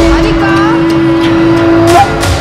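Film background score: one loud held note lasting about two seconds, with a few short gliding sounds over it about half a second in.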